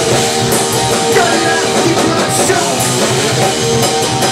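A punk rock band playing loud live: electric guitar, bass guitar and drum kit together.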